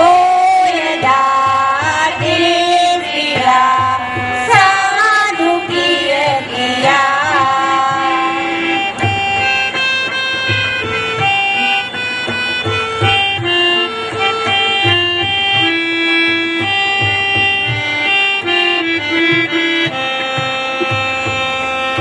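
Choir singing a Sinhala Buddhist devotional song (bhakti gee) over drum beats; about eight seconds in the voices stop and an instrumental interlude carries on, a melody of held notes on a reedy keyboard-like instrument over the drums.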